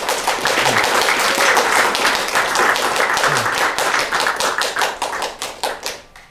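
Audience applauding: many people clapping at once, thinning to a few separate claps near the end before it stops.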